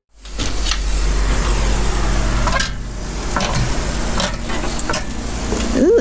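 Meat frying on a Blackstone propane griddle: a steady sizzle with a low rumble underneath and a few short clicks.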